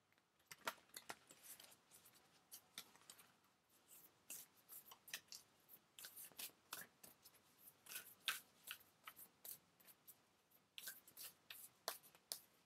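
Oracle cards being shuffled and handled: faint, irregular clicks and rustles of card stock, many of them throughout.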